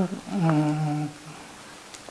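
An elderly man's voice holding one long, level hummed syllable for about a second, a steady-pitched drawn-out 'mmm' between spoken phrases.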